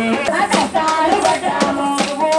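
Kolatam folk music: a sung melody over rhythmic percussion, with sharp clicks like the dancers' wooden kolatam sticks striking.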